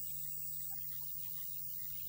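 Steady low electrical hum, with faint scattered short chirps over it and no speech.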